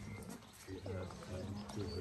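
People's voices talking, off and on, over a steady low hum.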